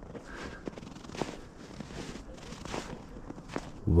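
Footsteps crunching in snow at a walking pace, a soft crunch roughly every half second or so.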